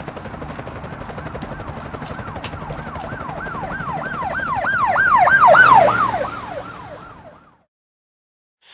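A siren with a fast rising-and-falling yelp swells to its loudest about five seconds in, then fades away, over a rapid low chopping pulse. All sound stops just before the end.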